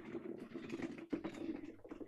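Panchi cloth rustling and crackling as it is folded and tucked in at the waist, many small irregular crackles.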